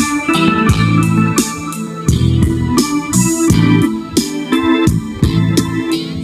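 Yamaha portable keyboard played on an organ voice: held chords over a strong bass, changing about once a second, with sharp percussive hits keeping a steady beat.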